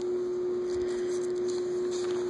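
Room tone: a steady low hum over an even hiss, with no page turning.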